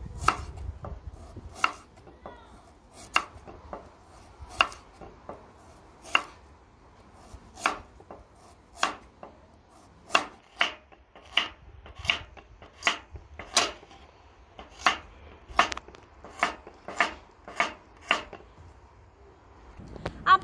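Kitchen knife slicing carrots into rounds on a wooden cutting board: each cut ends in a sharp knock of the blade on the board. The cuts come slowly at first, about one every second and a half, then quicken to more than one a second about halfway through.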